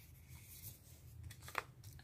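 Faint rustling and crinkling of a thin sticker sheet being handled and lifted, with a few sharper crinkles about one and a half seconds in.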